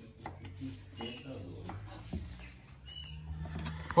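Scattered light knocks and clatter of utensils being handled on a kitchen counter, with faint voices in the background.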